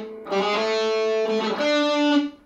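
Gibson Les Paul electric guitar through an amp: a held A note, then about one and a half seconds in a higher note, the D at the seventh fret of the G string, rings on.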